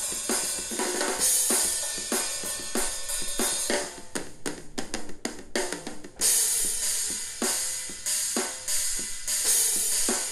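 Sampled rock drum kit triggered by Aerodrums air-drumming software, playing a steady beat with hi-hat and snare. About four seconds in the beat breaks into a quick run of fast strokes, a fill, which ends in a cymbal crash about six seconds in before the beat resumes.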